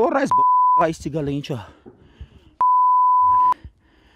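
Broadcast censor bleep, a steady high beep sounding twice over a man's speech: a short one about a third of a second in, and a longer one of about a second near the end, with the voice cut out beneath each.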